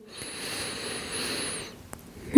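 A woman's deep breath in: one long, airy inhale lasting about a second and a half, with a faint whistle on top.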